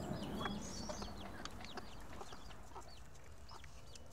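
Chickens calling softly: many short, high, falling chirps scattered throughout, with a few faint knocks.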